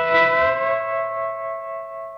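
Electric guitar double-stop at the 12th fret of the top E and B strings, the B string bent up a whole tone while the volume swells in, landing on the top two notes of a C-sharp minor triad. The two notes peak early, then ring on and slowly fade.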